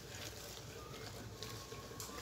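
Faint, soft stirring of mashed potatoes and margarine with a spoon in a stainless steel bowl, over a steady low room hum.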